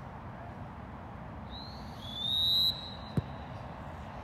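Referee's whistle: a short, faint blast, then a long, loud blast rising slightly in pitch, followed about half a second later by a single thump.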